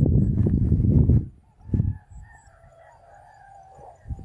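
A loud low rumble for the first second or so, then a short thump, then a rooster crowing faintly in one long, wavering call.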